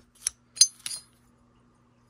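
Ceramic CPU packages clinking against each other as they are handled, three light clicks in the first second, the middle one the loudest.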